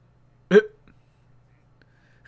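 A man's single short, hiccup-like stifled laugh about half a second in, over a faint low hum.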